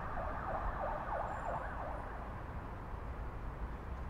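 Faint emergency-vehicle siren with quick rising and falling sweeps, several a second, dying away about halfway through, over a steady low city rumble.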